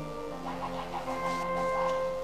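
Soft background music from a live church band: sustained keyboard chords held under a pause in the preaching, moving to a new chord about half a second in, with a higher held note joining a little after.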